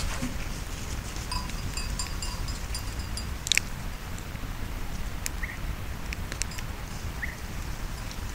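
Outdoor wind rumble on the microphone across an open field, with faint high tinkling over the first few seconds and one sharp click about three and a half seconds in.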